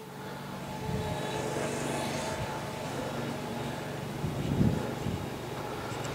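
A steady engine hum that grows louder over the first second and then holds, with a short low sound a little past halfway.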